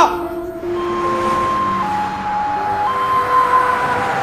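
Two-tone ambulance siren alternating between a high and a low note, each held about a second, with road noise growing louder near the end.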